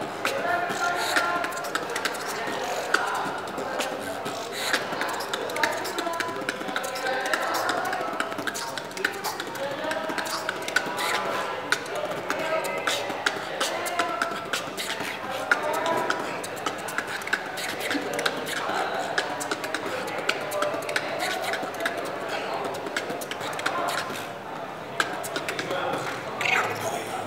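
Solo beatboxing: a fast, continuous stream of sharp mouth-made percussive clicks and hisses layered over a hummed, wavering vocal line.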